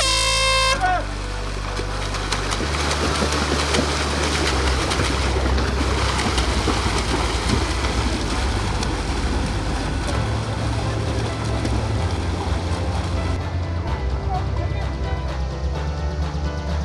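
A single short air-horn blast gives the start signal, then a group of swimmers churns the water in a continuous splash as they set off in open water. Background music plays underneath.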